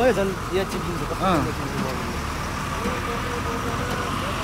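Roadside street noise: a steady hum of vehicle engines and traffic, with a few scattered voices, the clearest near the start and about a second in.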